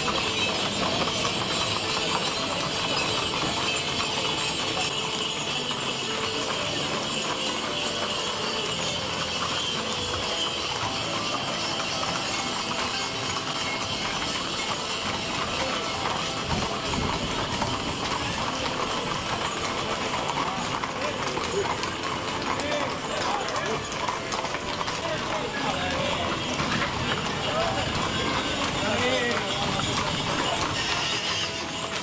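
Hooves of harnessed carriage horses clip-clopping on an asphalt street as the carriages pass, steady throughout, with people talking in the background.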